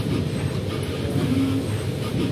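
Manutec h5 robot arm's drives running steadily as the arm moves its gripper over the table tennis ball rails, with a short hum about two-thirds of the way through.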